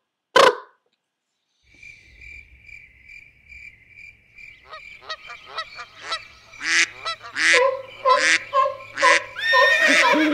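A short vocal burst about half a second in. Then, from about two seconds, a faint high tone pulses about three times a second, and from the middle on a run of short honking calls grows louder and quicker.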